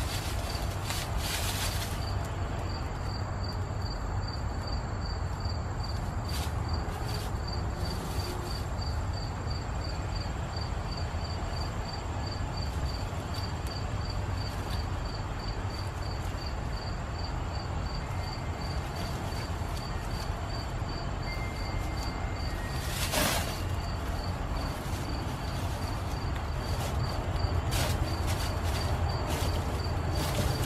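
Outdoor ambience with a steady low rumble and a cricket chirping evenly at about two chirps a second. A few brief rustles break in, the loudest about 23 seconds in.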